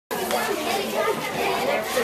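Many schoolchildren talking and calling out at once, a dense, unbroken chatter of overlapping voices.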